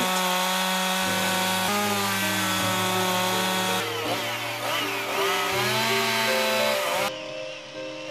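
Chainsaw running and cutting into wood, its engine pitch stepping and gliding up and down as the throttle changes. It cuts off about seven seconds in, leaving a much quieter background.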